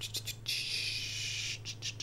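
A person breathing out, a soft hiss lasting about a second, with a few faint clicks before and after it, over a steady low electrical hum.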